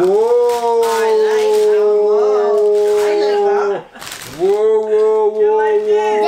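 A person's voice drawing out one long steady 'oooh' for about four seconds, breaking off briefly, then holding the same note again for about two seconds, a drawn-out cry of delight.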